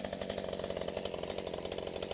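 Stihl MS211 two-stroke chainsaw engine idling steadily, a fast even pulsing, freshly started from cold.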